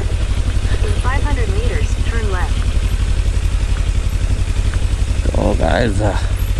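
Kawasaki Ninja 300's parallel-twin engine running at low revs with a steady low pulsing, as the motorcycle rolls slowly over a rough dirt road.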